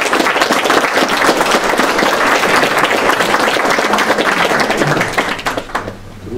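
A group of people applauding, many hands clapping together, dying away near the end.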